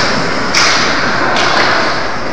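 Ice hockey play on a rink: a sharp thud about half a second in, over a steady hiss of rink noise.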